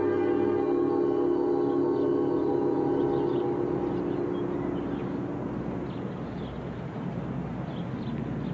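A large gong on a stand rings after being struck, a rich chord of steady overtones that slowly dies away over about five seconds.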